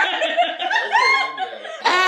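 People laughing and chuckling together.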